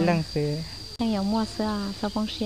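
A voice delivering Hmong lines in short syllables of mostly level pitch, with a pause about halfway, over a steady high insect drone.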